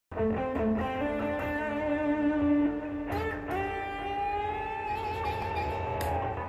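Stratocaster-style electric guitar playing a lead solo line. It plays a run of picked notes, then about halfway through a new note is picked and held long while it slowly bends up in pitch.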